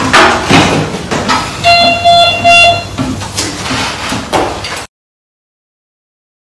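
A horn sounding: one pitched tone lasting about a second, broken into three short pulses, among knocks and clatter.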